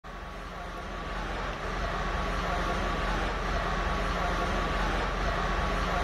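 Hydraulic excavator's diesel engine running steadily during demolition: a constant low drone with a thin steady whine over it, growing louder over the first two seconds.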